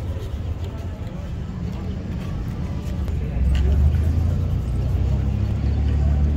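A motor vehicle's engine running close by, a low steady rumble that grows louder about three seconds in.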